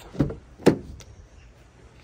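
BMW X1 front car door being opened: a soft click as the handle is pulled, a sharp clunk of the latch releasing, then a lighter click as the door swings out.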